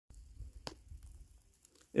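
Faint rustling and low rumble, with a single sharp click a little over half a second in.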